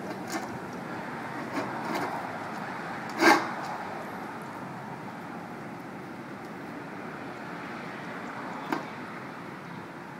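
A dog nosing tennis balls around in a stainless steel water bowl: water sloshing and a few short knocks of ball and bowl, the loudest a little over three seconds in and another near the end. A steady background hum runs underneath.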